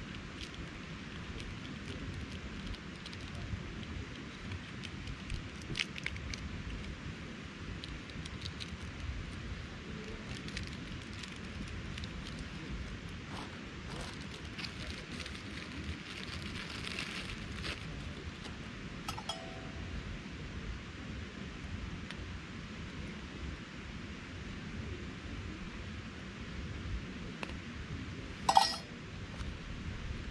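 Handling sounds from a small food packet: scattered light clicks and crinkling, a busier rustle in the middle, and a sharp snap near the end as the packet is torn open. A steady background rush runs underneath.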